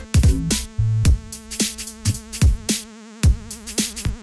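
Electronic background music: a drum-machine beat of regular kick and hi-hat strikes, with a synth line whose pitch wavers quickly through the second half.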